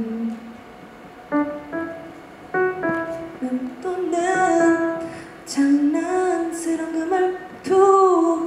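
A woman singing a short draft melody into a microphone over an electric keyboard, running through the tune again. A few separate keyboard notes come in during the first three seconds, and the sung line carries on from about four seconds in.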